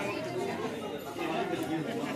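Several people chattering at once, overlapping voices with no single clear speaker.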